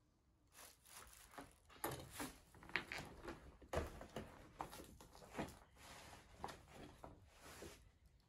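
Footsteps scuffing and knocking over a cluttered floor, with rustling handling noise, in an irregular run of knocks about once a second that starts shortly after the beginning and stops just before the end.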